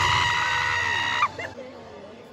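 A high voice holding one long note, gliding up at the start, over loud club music with heavy bass. Both cut off suddenly just over a second in, leaving only faint background noise.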